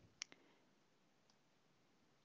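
Two quick computer mouse clicks close together, just after the start, against near silence.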